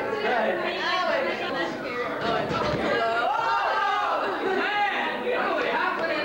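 Several people talking over one another: overlapping, indistinct chatter.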